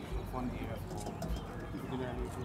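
Outdoor ambience of indistinct voices with a bird calling, possibly a dove's coo, over faint low thumps.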